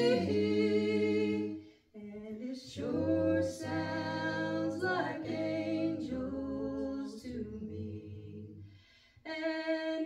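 A small group of men's and women's voices singing a hymn a cappella in harmony, with long held notes. The singing breaks off briefly about two seconds in and again near the end, between phrases.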